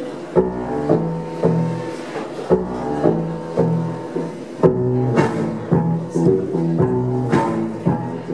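Live instrumental song intro on a hollow-body electric guitar: picked notes in a repeating rhythmic pattern over deep low notes.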